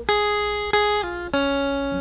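Stratocaster-style electric guitar picking a slow descending single-note line, A flat twice, then F, then D flat, each note ringing on.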